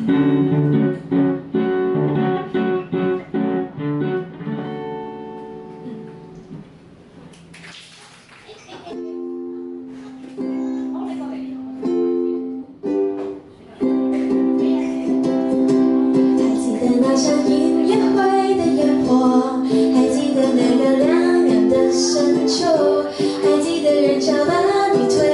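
Live acoustic ukulele and acoustic guitar: strummed chords that ring out and fade away, then a few short, clipped strums, then steady strumming with a woman singing over it.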